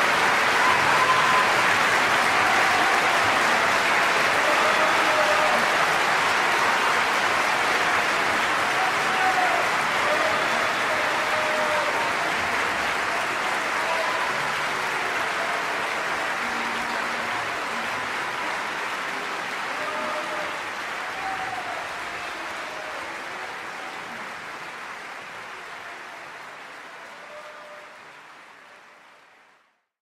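Audience applauding after an opera aria, with scattered shouts from the crowd. The applause slowly fades and dies away to silence at the end.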